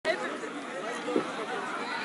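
Indistinct chatter of people talking among themselves, several voices overlapping at a moderate level.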